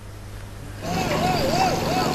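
Heavy construction machinery running at a building site: a steady engine and machinery din starts about a second in, with a wavering whine over it.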